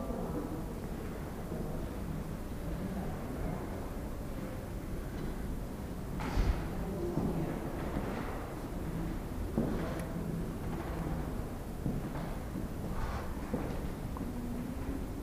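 Steady low rumble of room noise, broken by a few soft thumps, the loudest about six and a half seconds in.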